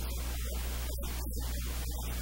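Steady static hiss over a constant low hum: recording noise from the audio chain, with no clear speech.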